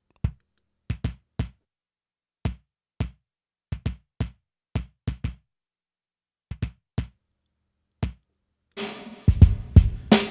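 A programmed kick drum sample playing on its own through an API 550A EQ plugin, its muddiness around 300 Hz cut: short low hits with a click on top, in an uneven hip-hop pattern with silence between them. About nine seconds in, the full drum beat with snare comes in.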